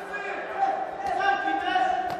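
Futsal players' voices shouting and calling on court, with the thuds of a futsal ball being kicked on the hall floor.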